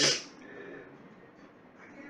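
A man sniffing bourbon from a whiskey glass held at his nose: one short, sharp inhale right at the start, then quiet room tone.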